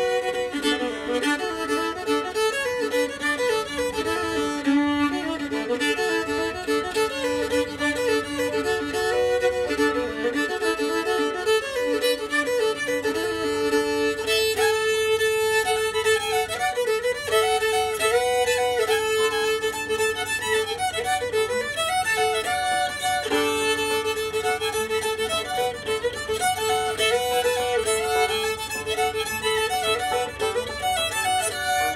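Old-time fiddle tune on a violin, bowed steadily in a lively running melody, often with a second string sounding alongside the melody note, accompanied by a banjo.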